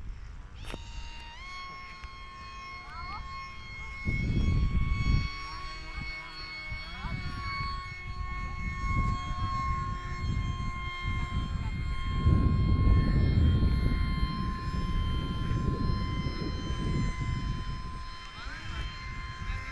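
Radio-controlled P-38 model airplane's twin motors running overhead with a steady, high whine that sets in about a second in, with low rumbling gusts of noise twice.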